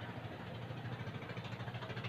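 A steady low motor hum with a fast, even flutter.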